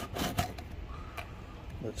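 A cardboard shipping box being handled, with a few light taps and scrapes of cardboard.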